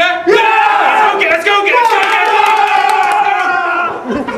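Several men shouting together in a loud, drawn-out group yell, their voices overlapping.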